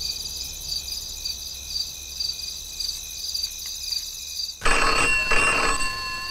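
Night insects chirping steadily, then, about two-thirds of the way in, a telephone bell starts ringing loudly in short repeated bursts.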